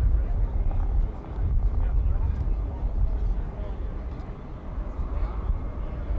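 Air Force One, a four-engine Boeing 707-based jet, taxiing, heard as a steady low rumble of its engines with no clear whine.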